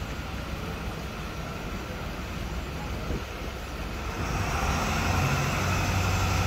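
A vehicle engine running steadily with a low hum, growing louder about four seconds in.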